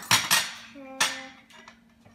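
Table knife clinking against a ceramic plate while cutting a block of butter: two quick knocks near the start, then a sharper clink about a second in that rings briefly.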